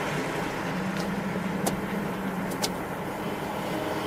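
Steady outdoor background noise with a low hum, like distant traffic, and a couple of faint ticks.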